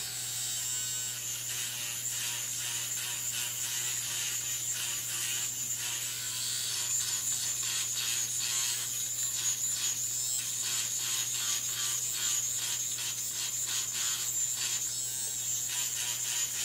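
Finishing Touch Flawless battery-powered facial hair remover running steadily against the face: a small motor's hum with a high steady whine, broken by irregular faint ticks as the head moves over the skin.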